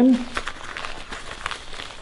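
Rustling of a fabric respirator face mask and its straps being handled and pulled into place over the face, with a few faint clicks.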